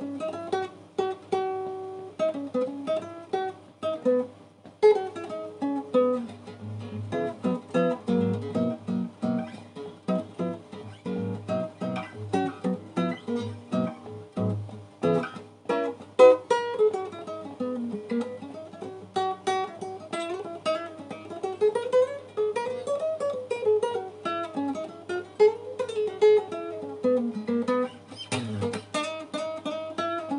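Solo nylon-string guitar played by hand: bursts of strummed chords in the first half, then fast single-note runs that rise and fall up and down the neck.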